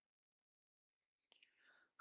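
Near silence in a pause of a voice-over, with only a very faint breath-like sound near the end.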